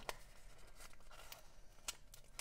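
Faint rustle of a paper sticker sheet as a kiss-cut sticker is picked and peeled off its backing, with two soft ticks, one just after the start and one near the end.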